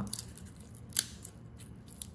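Steel link watch bracelet of the Rolex type being flexed in the hands: one sharp metallic click about a second in, with faint small clicks of the links and clasp.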